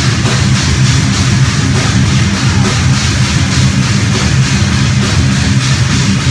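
Live heavy metal band playing loud: distorted electric guitars over a steady drum beat, with cymbal and drum hits about four to five times a second.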